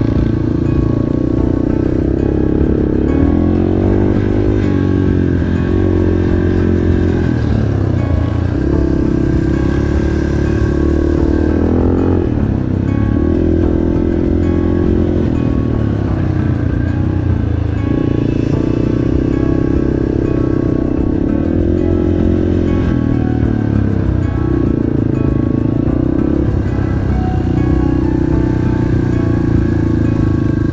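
Yamaha TT-R230 trail bike's single-cylinder four-stroke engine running under way on the dirt track, its revs rising and dropping back every few seconds with throttle and gear changes, with music playing over it.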